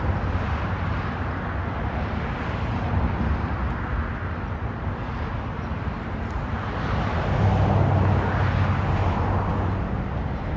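Road traffic running steadily, with a vehicle's engine growing louder for a couple of seconds near the end.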